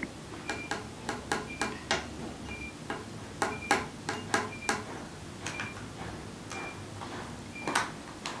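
A series of irregular light clicks and taps from small plastic containers, a cap and a drinking glass being handled. Faint, short, high chirps recur in the background.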